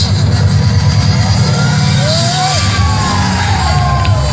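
Loud dance music with heavy bass playing over stage loudspeakers. About halfway through, a voice with sliding pitch comes in over the music.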